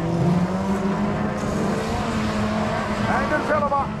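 Engines of several autocross cars racing on a dirt track, a steady mixed drone whose pitches shift only slightly.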